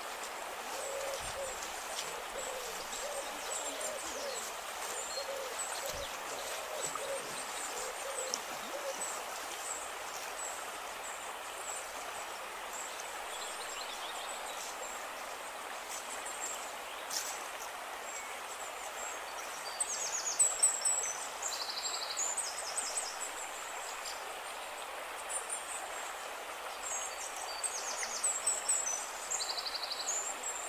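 A shallow forest stream running steadily, with a bird giving a repeated series of low hoots over the first several seconds. Short high chirping calls from other birds come in around two-thirds of the way through and again near the end.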